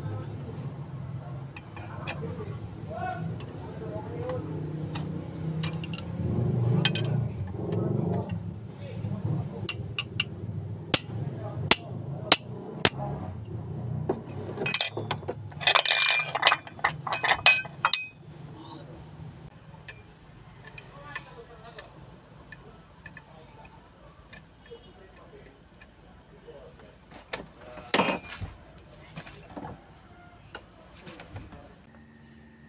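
Metal tools clinking on an automotive air-conditioning compressor as it is unbolted: scattered sharp clicks, with a quick run of socket-wrench clicks about halfway through and one more clink near the end.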